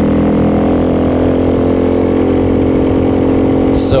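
Honda Grom's 125 cc single-cylinder four-stroke engine running at a steady cruise through its loud exhaust, heard from on the bike.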